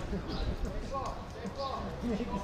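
Distant shouting from footballers' voices carrying across an open pitch, over a steady low rumble.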